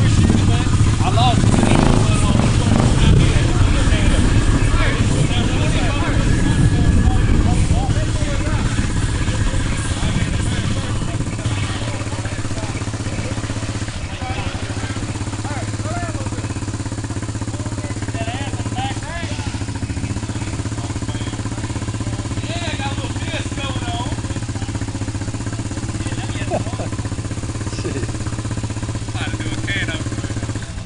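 Suzuki ATV engine running steadily as the quad wades through deep, muddy water. The engine is louder for the first several seconds, then settles to a lower, even note.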